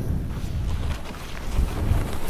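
Wind buffeting a moving action camera's microphone in a steady low rumble, over the hiss of a snowboard riding through powder snow.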